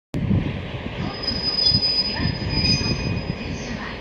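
Steel wheels of a JR East DE10 diesel-hydraulic locomotive squealing on the rails as it moves slowly, a high squeal holding for about two seconds in the middle over a low rumble.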